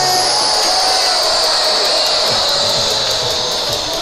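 Thousands of jet balloons released together by a stadium crowd, their whistles merging into one high, hissing whistle that slowly falls in pitch, over crowd noise. The crowd's singing trails off in the first second.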